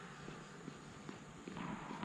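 Faint, irregular footsteps on a tennis court, over a steady hiss.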